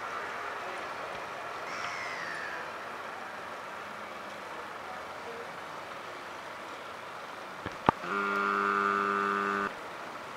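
Steady hum of city traffic with a short falling squeal about two seconds in. Near the end come two sharp clicks, then a loud, steady horn blast held for about a second and a half that cuts off suddenly.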